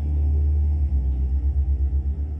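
Dark film-score music held on a deep low note, which begins pulsing quickly about a second in, with faint higher notes above it.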